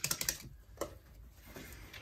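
A quick run of light clicks and taps, then one more click just under a second in.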